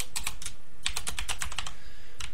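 Typing on a computer keyboard: a few keystrokes, a pause of about half a second, then a quicker run of keystrokes.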